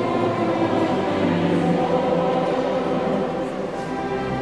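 Choir singing held chords, moving to a new chord about a second in.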